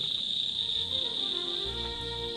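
Steady chirring of crickets, with soft background music of held notes coming in about halfway through.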